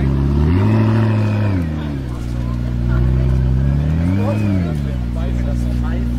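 McLaren P1's twin-turbo V8 idling, blipped twice with short revs that rise and fall smoothly, about half a second in and again around four seconds in, then settling back to idle.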